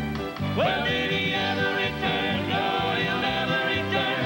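Country music from a male vocal quartet singing in harmony over band accompaniment, with a sliding note that rises about half a second in.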